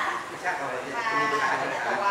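Speech only: a person talking in Thai without pause.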